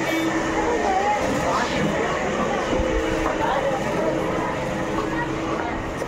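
Background voices of people talking, with no clear words, over a steady hum.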